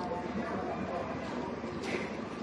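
Indistinct murmur of other people's voices over a steady hum of room noise in a large indoor public hall, with a brief sharp clack near the end.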